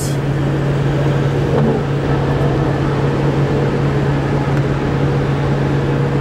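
Steady engine and road noise heard from inside a vehicle's cabin at highway speed, with a constant low drone.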